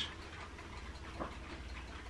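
Faint fizzing and ticking of carbonation from a freshly opened can of Mtn Dew Kickstart energy drink held close, over a low steady hum.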